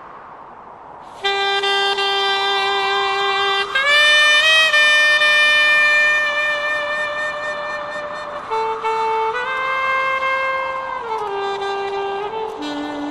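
A wind instrument starts about a second in and plays a slow melody of long held notes, each sustained for one to several seconds.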